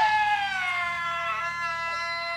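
A single high voice holding one long, drawn-out chanted note, which slides down in pitch at the start and then sinks slowly lower.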